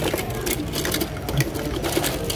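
Loose die-cast metal toy cars clicking and clattering against each other as a hand rummages through a cardboard box full of them: a rapid, irregular run of small sharp clicks.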